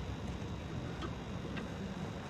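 Faint regular ticking, about two clicks a second, over a steady low rumble.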